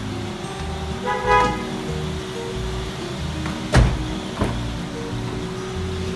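A car door of a 2013 Daihatsu Xenia shutting: one heavy thud a little past halfway, with a lighter click about half a second later, over background music.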